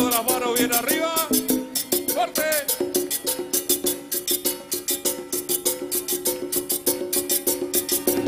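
Live cumbia band playing: accordion chords and bass over congas and a quick, steady percussion beat, with a few short sung phrases in the first couple of seconds.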